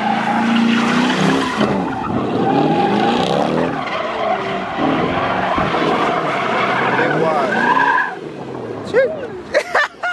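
Chevrolet Camaro's engine revving up and down hard while its rear tires squeal and spin through donuts, with traction control switched off. The engine note drops away about eight seconds in, and short chirps follow near the end.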